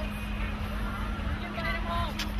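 Indistinct voices over street noise, with a car running close by and a steady low hum underneath.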